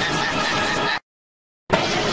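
Anime battle sound effects: a loud, dense rush of energy-blast noise. It cuts out abruptly to total silence for about half a second, then comes back with a sharp hit.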